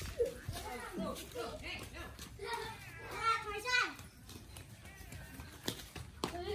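Children's voices calling and shouting at play, several short calls in the first few seconds, then quieter.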